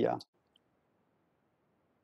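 A man's voice trails off with a hesitant "uh", then near silence with only a faint hiss.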